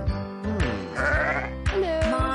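Backing music of a children's song with a steady beat, and a sheep bleating once about a second in.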